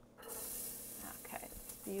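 Sliced garlic hitting hot olive oil and sausage fat in a stainless steel sauté pan, starting to sizzle suddenly just after the start and frying steadily.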